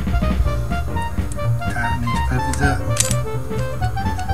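Background music with a steady bass line and a run of short melodic notes.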